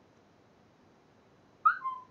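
Near silence with faint room tone, then about one and a half seconds in a brief, loud, high-pitched squeak that bends in pitch and settles on a short steady note.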